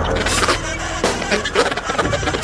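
Free-improvised jazz played live by baritone saxophone, two double basses and drum kit, dense and loud, with irregular sharp drum and cymbal hits over sustained saxophone and bass tones.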